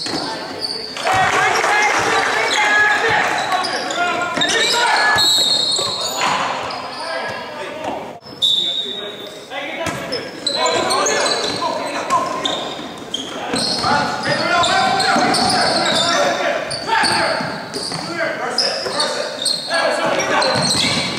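Basketball game sounds in an echoing gym: a basketball bouncing on the hardwood floor, with players and coaches calling out and shouting throughout.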